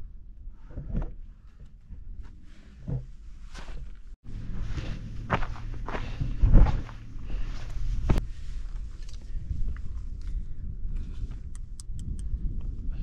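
Footsteps and scuffs of a hiker scrambling over rock and loose talus, with knocks from handling a camera pole and a louder thump a little past halfway. A low rumble of wind on the microphone lies under it.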